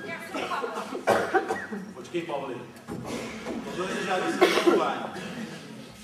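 Actors' speech on stage, broken by coughing.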